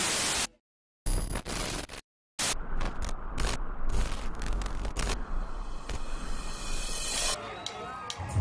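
A brief burst of TV-static hiss, then dead silence, then a stretch of crackling noise with scattered sharp clicks and a low rumble: the sound-design intro before a rock track begins.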